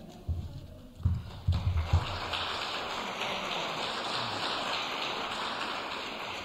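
Audience applauding: a dense, steady patter of clapping that starts about a second in, with a few low thumps as it begins.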